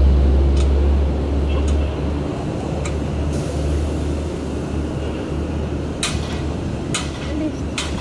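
Outdoor background noise with a low rumble that is strongest for the first two seconds and then eases. A few short, sharp sounds come through it, three of them close together near the end.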